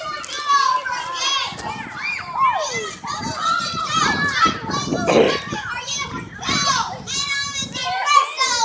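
Several children shouting and chattering over one another, high voices overlapping throughout with no clear words.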